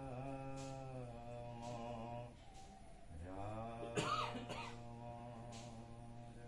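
A congregation chanting a nam-prasanga in unison, holding long drawn-out notes on a steady low pitch, then starting a new phrase after a short break about three seconds in. A sharp cough cuts in about four seconds in.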